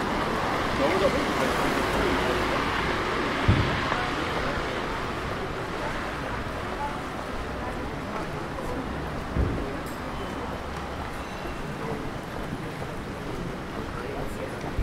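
City street ambience: a car passes with tyre hiss on the wet road, loudest over the first few seconds and fading, over a background of traffic and passers-by's voices. Two dull thumps come about three and a half and nine and a half seconds in.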